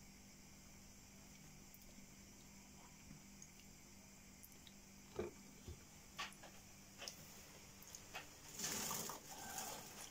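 A cockatiel bathing in a shallow water dish: mostly faint, with a few small splashes and flicks in the second half and a louder rustle of wet feathers and water near the end.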